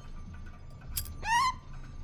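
Small brass robot puppet-prop making a click and then a short rising chirp as its head moves, over a low steady hum.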